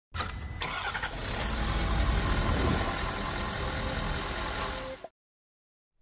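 An engine starting and running steadily, with a click as it begins, then cutting off suddenly about five seconds in.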